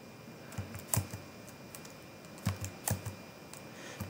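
Computer keyboard keystrokes: a few separate taps about a second in, then a quick cluster of four more a little later.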